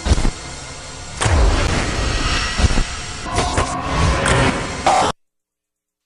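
Sound effects for an animated station logo: noisy swooshing textures with several sudden deep hits. It cuts off to dead silence about five seconds in.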